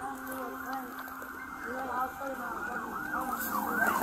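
Emergency vehicle siren rising and falling, faint at first and growing louder toward the end as it approaches.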